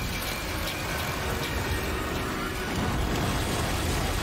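Animated TV show soundtrack: a steady rumbling rush of sound effects.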